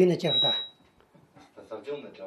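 A man speaking into a handheld microphone, a loud burst of speech followed by more talk, with a brief high steady tone that sounds for about half a second near the start.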